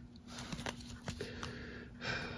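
Faint crinkling and small clicks of a clear plastic coin sleeve being handled and turned in the hand, over a thin steady low hum.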